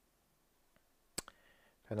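A pen striking the writing surface with one sharp click a little over a second in and a lighter click just after, followed by faint scratching of the pen as it writes.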